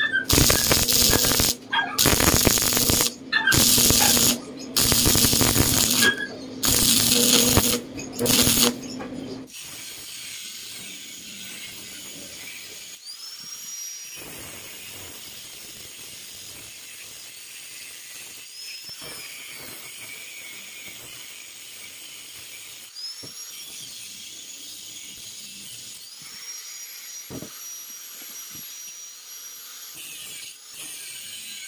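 Stick welding with a coated electrode: loud crackling welds of a second or two each, with short breaks, over the first nine seconds or so. After that, a quieter steady high whine of an angle grinder on steel, with a few short rising whines.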